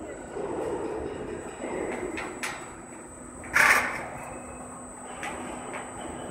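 Steel coil edge protector machine running, bending steel strip into a ring: a steady mechanical hum with scattered metallic clicks, and one loud, short rasping burst about three and a half seconds in.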